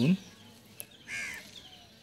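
A crow caws once, a single harsh call of about half a second that comes about a second in, faint in the background.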